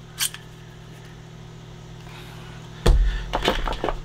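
Clear plastic blister packaging being handled: a single click just after the start, then a loud thump about three seconds in followed by a few crackling scrapes of the plastic tray. A low steady hum runs underneath.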